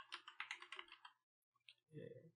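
Faint, quick computer keyboard typing: a rapid run of keystrokes for about the first second that then stops.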